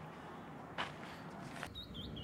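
Quiet, faint background with one brief rustle about a second in; near the end a small bird starts chirping in short, quick repeated calls.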